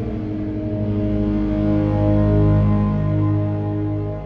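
PRS SE 24 electric guitar played through fuzz into heavy reverb and delay: sustained notes that ring on and overlap into an ambient wash, swelling loudest about two and a half seconds in and easing off near the end.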